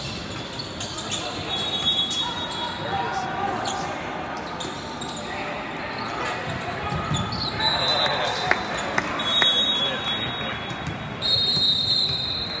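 Volleyball rally in a large sports hall: several sharp ball hits in the second half and short high squeaks from players' shoes on the court, over a steady background of many voices echoing in the hall.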